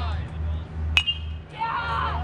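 Metal baseball bat hitting a pitched ball about a second in: a single sharp crack with a brief high-pitched ringing ping.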